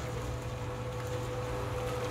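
Portable cement mixer running on a building site: a steady motor hum with a thin, even tone above it.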